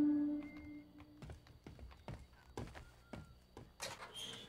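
Soft cartoon background music: a held note that fades out about a second in, then a string of light, irregular tapping notes.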